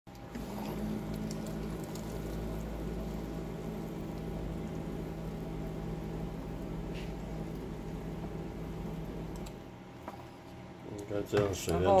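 Electric thermo pot's pump running with a steady hum while a stream of hot water pours into an instant-noodle cup, stopping about two seconds before the end.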